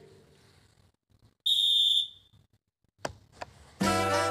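One short, steady blast on a referee's whistle about a second and a half in, in an otherwise near-silent gap. A click follows, and a hip-hop beat comes in just before the end.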